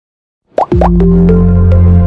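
Animated logo intro jingle: silence for half a second, then two quick rising plops, followed by a loud held low synth note with a few short higher notes stepping above it.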